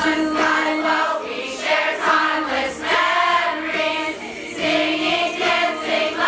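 A large group of girls singing a song together as a choir.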